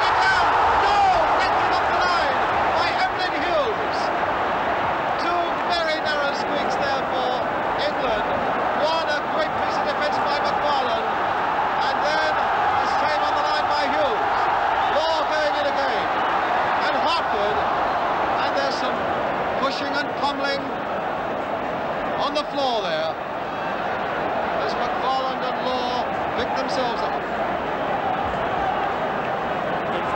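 Large football stadium crowd noise, loudest in the first couple of seconds, when a goalmouth chance is being cleared off the line, then a steady din of many voices.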